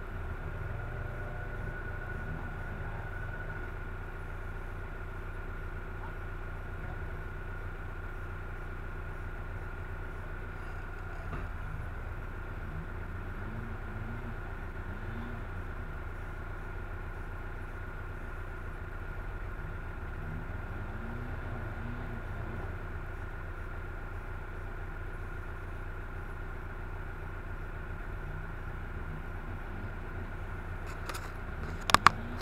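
A vehicle engine idling with a steady low rumble and a thin constant whine. Short rising-and-falling revs from an engine come through a little before halfway and again about two-thirds of the way in.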